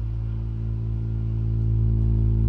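Live ambient drone music: a sustained synthesizer chord held steady over a strong, unchanging low bass tone, with no melody moving above it.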